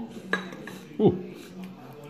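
Steel table knife and fork clinking and scraping against a ceramic bowl while cutting a small wiener sausage, with a sharp clink about a third of a second in. About a second in, a short voice-like sound falls quickly in pitch, louder than the cutlery.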